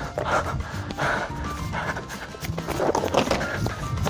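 A person breathing hard in irregular gasps, with uneven footfalls on grass, while running unsteadily.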